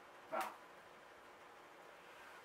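One short vocal sound about half a second in, then quiet room tone.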